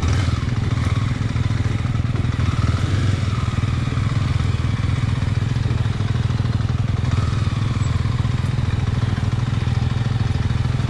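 Kawasaki KLX250 single-cylinder four-stroke dirt bike engine running steadily at low revs, heard from the rider's helmet camera, as the bike moves slowly along a dirt trail.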